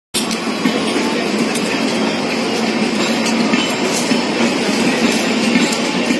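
Red LHB passenger coaches rolling past: a steady rumble of steel wheels on rail with scattered sharp clicks from the wheels crossing rail joints.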